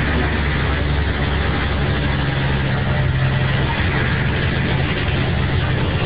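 Mercedes-Benz OHL1316 city bus's rear-mounted OM 366 inline-six diesel running steadily, heard from inside the bus through a mobile phone's microphone; its low drone grows a little stronger about halfway through.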